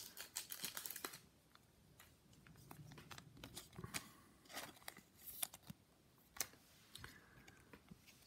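Faint handling of trading cards and a clear plastic wrapper: scattered soft crinkles and light clicks of cards sliding against each other, busiest in the first second and again around four to five seconds in.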